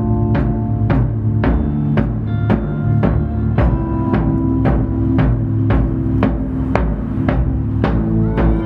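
Live band playing an instrumental passage: a drum struck with mallets about twice a second over sustained keyboard, guitar and bass chords.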